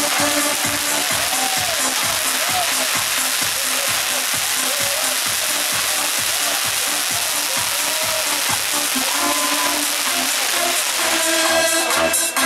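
A ground fountain firework hissing steadily as it sprays sparks, over electronic dance music with a steady beat. The hiss eases near the end, leaving the music clearer.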